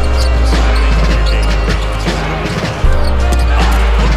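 Background hip-hop beat with no vocals: a deep bass note that lands at the start and again about three seconds in, under sharp percussive hits.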